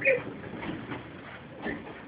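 A person laughs briefly at the start, then low room sound with a faint short knock near the end.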